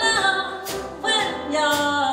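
Live jazz quintet: a female voice singing over piano, double bass and drums, with cymbal strokes about every three-quarters of a second.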